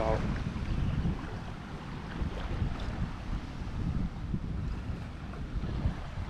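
Wind buffeting a handheld camera's microphone, an uneven low rumble, with a man's "Wow!" at the very start.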